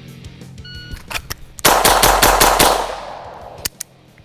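Shot-timer beep, then a 9mm Beretta 92 pistol fired in a very rapid string of about six shots in roughly a second, echoing after. The string is too fast, by the shooter's own account, and threw a miss.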